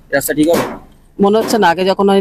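A woman speaking: two short stretches of talk with a brief pause between them.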